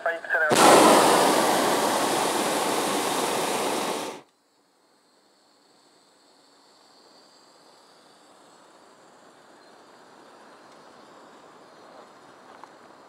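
Hot-air balloon's propane burner firing in one blast of about three and a half seconds, starting about half a second in and cutting off suddenly, after which only a faint steady hiss remains.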